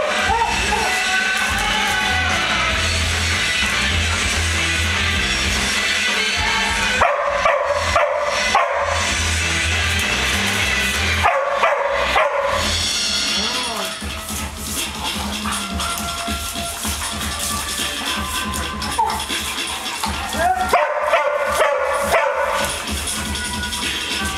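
Background music playing steadily under dogs barking and yelping as they play-fight, the barks coming in three bouts, about a third of the way in, around halfway, and near the end.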